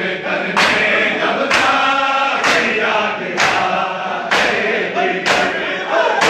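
A large group of men chanting a noha (Shia lament) together while beating their bare chests in unison, a loud collective slap landing about once a second over the chant.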